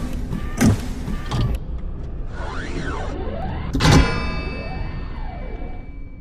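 Sound-designed robot intro effects. Heavy mechanical stomps come about every three-quarters of a second at first, followed by whirring servo sweeps that rise and fall. A loud metallic hit about four seconds in rings out and fades.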